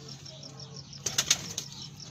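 Pigeon wings flapping: a quick burst of several sharp wing claps about a second in, then quieter.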